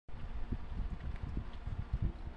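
Low, uneven rumble with irregular soft thumps and no voice, typical of a handheld microphone being moved or buffeted.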